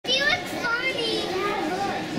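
Young children's high-pitched voices calling out, with no clear words.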